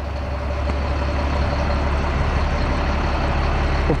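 The Caterpillar C7 7.2-litre turbo diesel of a rear-engine Thomas HDX bus idling steadily, a deep low hum with a faint high whine over it.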